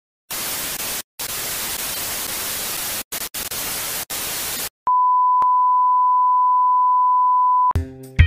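TV static hiss in several stretches with short breaks, then a steady single-pitch test-tone beep at about 1 kHz for nearly three seconds. The beep cuts off near the end as funk music with drums starts.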